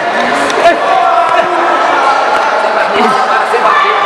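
Spectators shouting in an echoing sports hall during an amateur heavyweight boxing bout, with a few sharp thuds of gloved punches landing.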